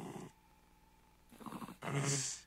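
A few short, breathy vocal sounds in a song's sparse intro: one right at the start and two close together in the last second, with near quiet between them.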